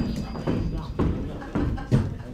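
Footsteps of heeled boots striding across a wooden stage floor, about two steps a second.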